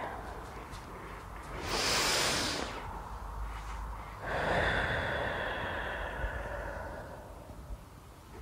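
A person breathing audibly through a qi gong movement: a short in-breath about two seconds in, then a long out-breath from about four seconds in that fades away near the end.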